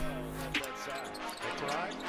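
A basketball dribbled on a hardwood court, with one sharp bounce about half a second in. Arena crowd noise and music run in the background.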